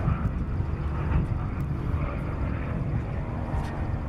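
Pipistrel Virus light propeller aircraft flying past overhead, its engine and propeller making a steady drone over a low rumble.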